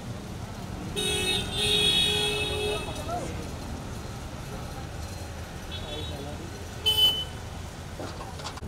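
A vehicle horn sounding in about three short, steady blasts about a second in, over constant low traffic and crowd rumble. A brief high beep near the end.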